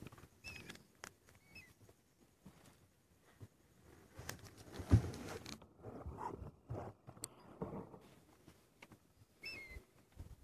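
Faint outdoor sounds: a few short chirping calls, low rustling, and one sharp knock about five seconds in.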